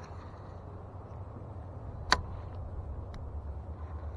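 A skip cast with a baitcasting rod and reel: one sharp click about two seconds in, as the reel is engaged, and a faint tick about a second later, over a steady low rumble.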